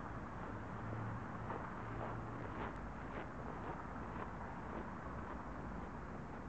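Steady outdoor background noise with a faint low hum and a few light clicks.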